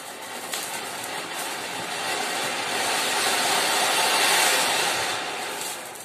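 Ground fountain firework (flower pot) hissing steadily as it sprays sparks, growing louder to a peak about four seconds in, then dying down near the end.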